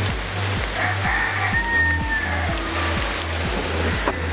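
Background music with a steady beat, over the sizzle of onions and whole spices frying in a large aluminium pot. A rooster crows once, starting about a second in.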